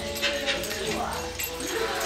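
Pet birds chirping and calling faintly in the background, over a low murmur of voices.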